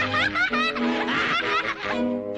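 A cartoon character's snickering laugh, in quick short rising bursts, over orchestral cartoon underscore that plays steadily beneath it.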